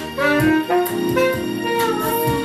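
Saxophone playing a phrase of several quick notes, some sliding up into pitch, over a recorded backing track.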